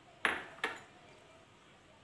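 Small cut-glass bowls clinking twice, about half a second apart, each strike with a brief high ring.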